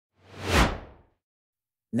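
A whoosh transition sound effect: one swell of rushing noise about a second long that builds, peaks about half a second in and fades, sweeping downward in pitch.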